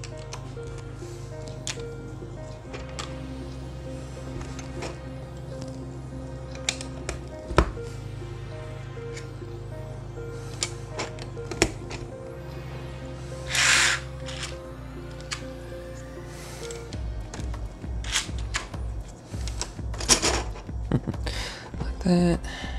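Background music with steady low notes, turning to a pulsing beat about 17 seconds in, over scattered sharp clicks of plastic Lego Technic pieces being pressed together. A brief rustle about 14 seconds in.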